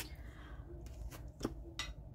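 A few light clicks and taps from nail-stamping tools being handled against a metal stamping plate, three short ones in the second half.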